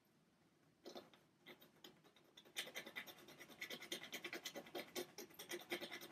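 A pointed tool scratching fine lines into acrylic paint on a birch wood panel. There are a few separate strokes about a second in, then rapid short scratches from about two and a half seconds on.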